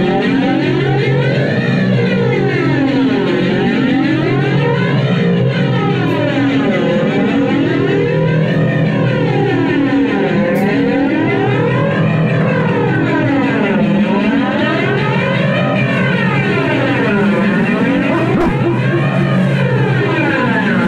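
A live band holding a loud, distorted drone, its tone sweeping up and down in a slow whoosh about every three and a half seconds, like a flanger effect.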